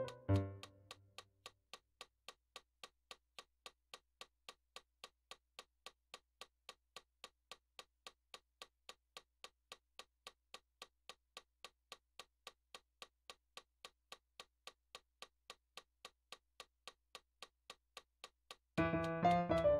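A digital piano chord dying away in the first second, then a metronome clicking steadily at about three beats a second.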